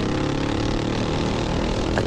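Predator 212 single-cylinder four-stroke engine of a heavy stock dirt-track kart running at speed at a steady pitch, heard onboard over an even rush of wind and track noise.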